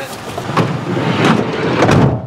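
Large cardboard box scraping and rustling against the seat and door as it is wedged into a car's back seat, with a few knocks, ending in a thud near the end.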